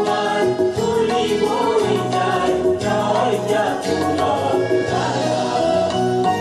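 A song sung by a group of voices in chorus with instrumental accompaniment, with long held notes over a sustained low line.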